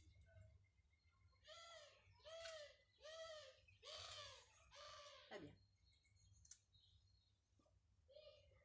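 A bird calling five times in quick succession, each call a short arched note, faint against near silence.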